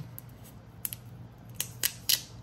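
Thin plastic protective film being peeled off a Google Pixel Buds A-Series earbud charging case: a few faint, short crinkles and clicks, the clearest in the second half.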